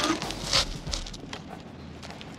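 Solid rubber tires of a Varla Pegasus electric scooter rolling over broken glass on asphalt: a burst of crunching and crackling in the first half-second, then a low rolling rumble that dies away about a second in.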